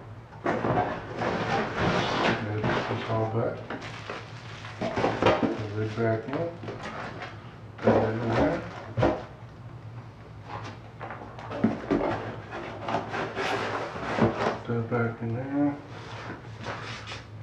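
A plastic brewing bucket being handled in a cardboard shipping box: repeated knocks, scrapes and rustles of plastic against cardboard, with a low steady hum under it.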